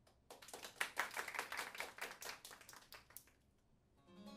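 A small audience clapping for about three seconds. The applause is loudest soon after it starts, then thins out and fades away.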